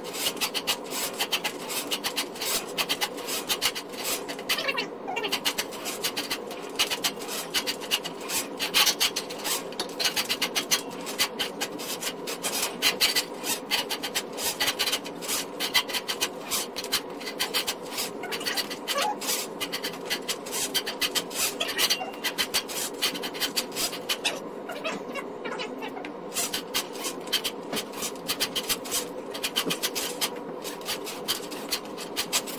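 Rental drum-type sewer snake machine with an 18-inch drum running, its steel cable being pulled back out of the sewer line. The cable makes a dense, rapid clatter of clicks and scraping over the machine's steady motor hum.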